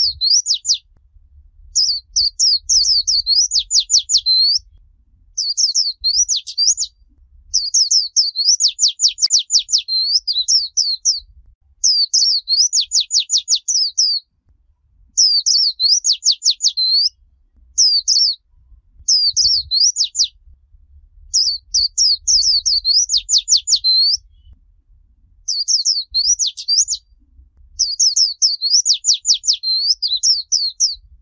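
White-eye (vành khuyên) singing the rapid 'líu choè' style of song: high warbling phrases of fast trilled, downward-sweeping notes, each one to three seconds long, repeated about a dozen times with short pauses between.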